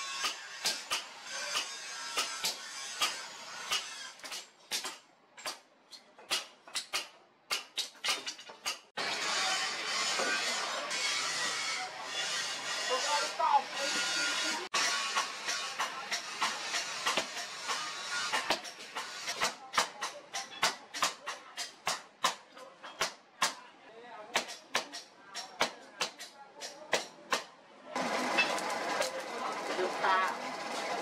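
Hand hammer striking red-hot steel on an anvil: many separate blows, irregular, sometimes in quick runs of two or three a second, with stretches of dense background noise between.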